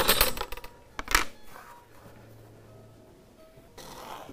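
A steel rule clattering as it is put down on a wooden workbench: a metallic rattle at the start and a second sharp knock about a second in, then quiet.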